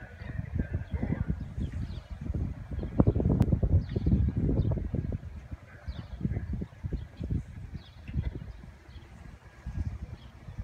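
Wind buffeting the microphone in uneven gusts, strongest about three to five seconds in.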